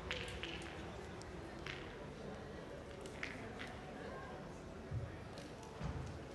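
Faint indoor pétanque hall ambience: a steady murmur of distant voices, with several light clicks scattered through it and two dull thuds near the end.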